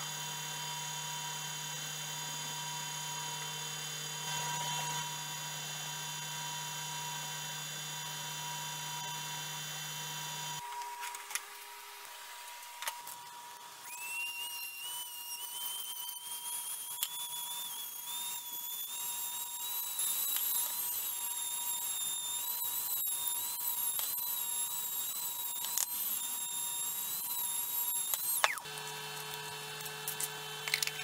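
A vacuum pump runs with a steady hum. After a cut and a short lull, a handheld rotary tool whines at a high pitch that wavers as its bit bores into dog biscuits, then stops shortly before the end, when the steady hum comes back.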